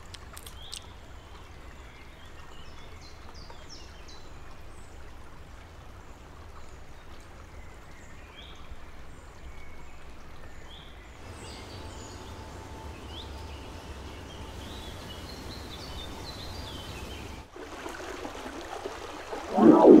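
Steady rush of running water with small high bird chirps scattered over it; the background changes abruptly twice, about halfway through and near the end.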